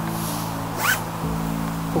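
Nylon gymnastics-ring strap pulled quickly through its cam buckle: a brief zipping sound that rises in pitch about a second in, with a shorter hiss just before it. Background music with held chords runs underneath.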